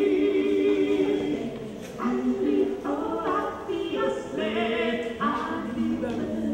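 Children's choir singing a cappella: a held chord that breaks off about a second and a half in, then a new phrase of moving notes sung by several voices together.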